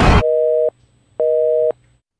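Telephone busy signal: two beeps of a steady two-note tone, each about half a second long with a half-second gap. A loud whoosh cuts off just after the start.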